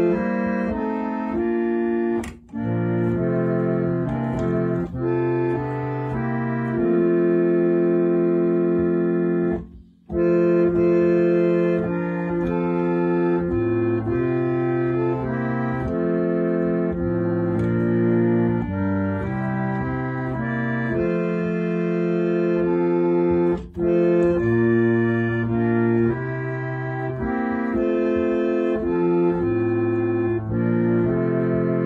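Yamaha reed organ playing a hymn in sustained chords, the bass moving note by note under held harmonies. The chords break off briefly between phrases: about two seconds in, near ten seconds, and about twenty-four seconds in.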